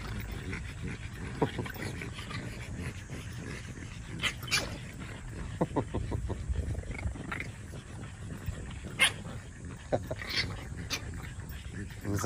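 French bulldogs squabbling, the angry puppy giving short growls and yaps in scattered bursts, with a cluster of brief yelps about six seconds in.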